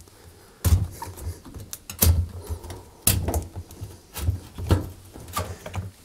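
Rubber door seal of a front-loading washing machine being handled and pushed in by hand, with rubbing and a handful of irregular knocks against the machine's door opening.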